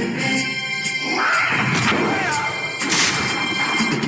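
Music plays throughout, and about a second in a man is thrown into stacked cardboard boxes, which crash and tumble, with the loudest hit near three seconds.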